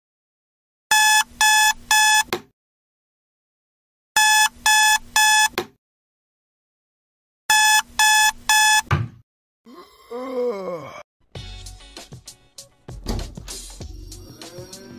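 Digital alarm clock beeping: three bursts of three quick, high electronic beeps, a few seconds apart. After the last burst comes a short wavering, sliding sound, then a run of sharp knocks near the end.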